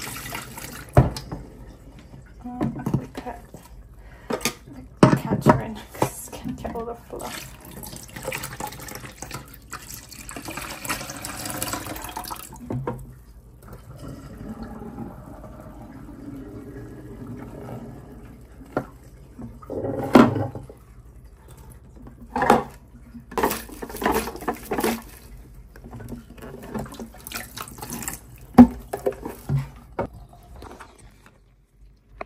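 Dirty water from a carpet cleaner's tank pouring and splashing into a stainless steel sink for about the first twelve seconds, then softer sloshing of the water in the sink, with a few sharp knocks in the second half.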